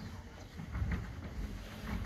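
Faint, indistinct voices in a large hall over a low rumble of room noise.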